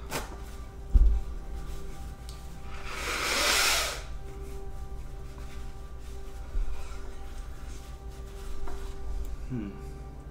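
A man blowing his nose into a tissue: one loud, rushing blast lasting about a second, about three seconds in, with softer sniffs and wipes later. A single thump comes about a second in.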